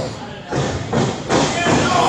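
A few sudden thuds on the wrestling ring, about half a second and a second in, with a commentator's voice coming back near the end.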